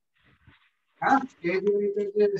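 A man's voice: after a short pause, a few speech sounds about halfway in, then a held, drawn-out syllable near the end.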